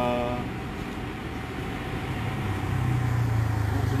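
Road traffic: a motor vehicle passing, its low engine rumble building over the second half.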